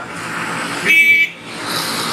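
A vehicle horn gives one short flat beep of about half a second, about a second in, over steady wind and road noise from a moving motorbike.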